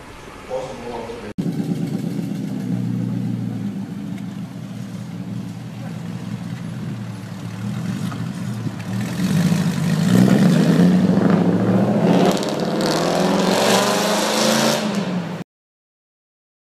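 Mercedes-Benz CW311's AMG-tuned V8 running, then revved several times from about nine seconds in, louder and rising in pitch with each rev; the sound cuts off abruptly just before the end.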